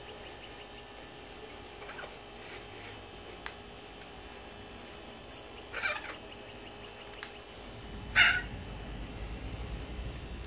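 Two short bird calls about two and a half seconds apart, the second louder, with a couple of faint clicks between them.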